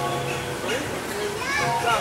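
Children's and adults' voices chattering and calling out, with a brief cluster of higher children's calls near the end.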